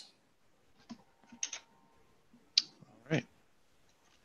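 A few faint, separate clicks in a quiet gap, spread over a drawn-out spoken 'all right'.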